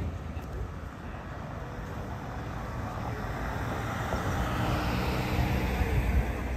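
A motor vehicle approaching, its engine rumble and road noise growing steadily louder.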